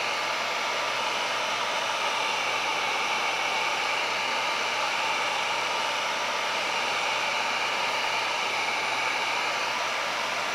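Electric heat gun blowing steadily, held over a vinyl RC chassis skin to dry out leftover water under it and soften the material.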